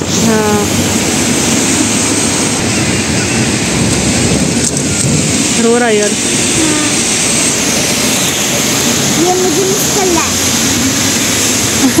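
Heavy rain falling as a loud, steady hiss, with car tyres swishing through standing water on a flooded road.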